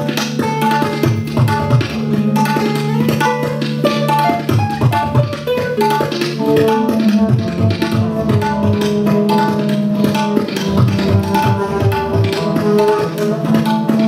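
Live ensemble of flute, sitar, acoustic guitar and tabla playing together: a sustained flute melody over quick tabla strokes and plucked strings.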